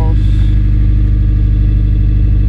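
Honda Civic Si's K20 four-cylinder engine idling steadily, heard at the tailpipe as a low, even rumble.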